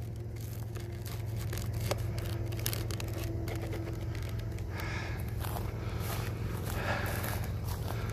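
Footsteps through dry grass and brush, with irregular rustling and crackling over a steady low hum.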